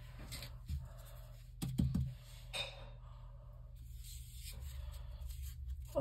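A rolled paper tube with a pencil stuck inside being handled on a wooden table: paper rustling and scraping, with a few soft knocks, the loudest a quick cluster just under two seconds in.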